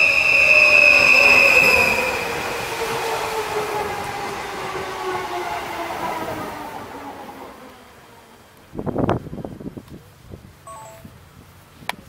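Stadler FLIRT electric multiple unit (R-net unit 2013) running in and slowing: a high steady whine, loudest in the first two seconds, over motor tones that fall in pitch as the train brakes, all fading as it passes and draws away. About nine seconds in, a short loud burst of noise, then a few faint short tones.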